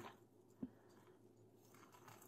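Near silence, with one brief faint low knock just over half a second in.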